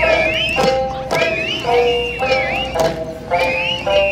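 Okinawan Eisa drum-dance music: drums struck together about twice a second, under a melody of long, steady, stepping notes with high wavering tones above it.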